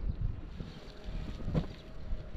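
Wind buffeting the microphone, with the rustle and flap of a heavy canvas sheet being lifted and shaken out, one brief louder swish about one and a half seconds in.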